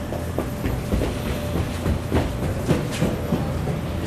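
Irregular thumps and knocks, a few a second, echoing in a large gymnasium over a low steady rumble of the crowd.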